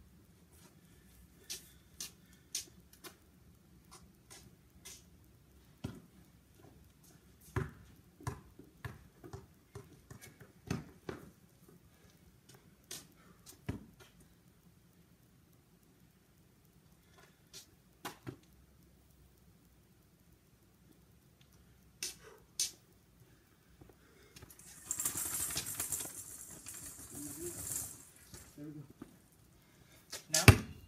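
Faint, scattered knocks and taps, a basketball being handled and bounced on a concrete driveway, heard at a distance. A few seconds of rustling noise come near the end.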